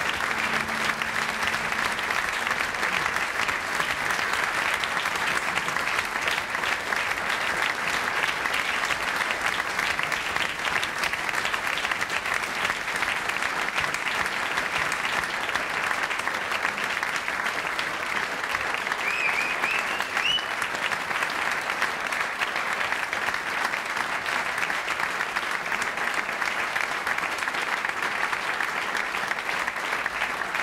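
Large theatre audience applauding steadily and at length, without a break.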